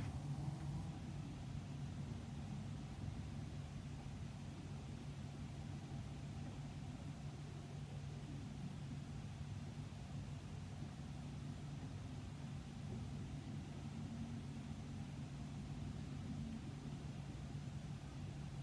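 Quiet room tone: a faint, steady low hum under a light hiss.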